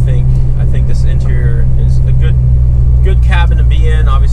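BMW E46 M3's S54 straight-six with catless headers and an aftermarket muffler, droning steadily at a light cruise, heard from inside the cabin while driving.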